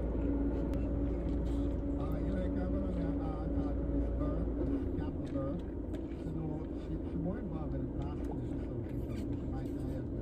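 Steady hum of a car idling, heard inside the cabin, with a low rumble that fades out about halfway through; indistinct voice sounds run faintly over it.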